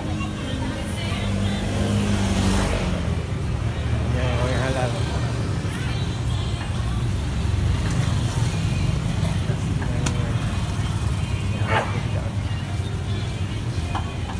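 A small engine running steadily with a low rumble, under faint background chatter.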